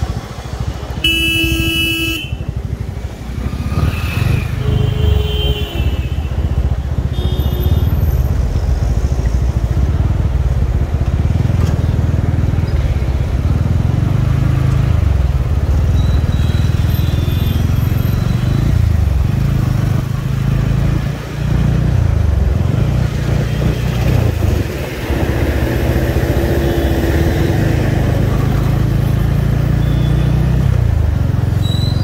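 Motorcycle engine running on the move through traffic, its low note rising and falling with speed. A vehicle horn honks loudly for about a second near the start, and fainter horns sound a few more times later.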